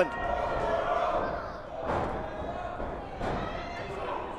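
Crowd noise in a large hall with scattered shouts from the audience. Two dull thuds come about two and three seconds in, wrestlers landing on the ring canvas.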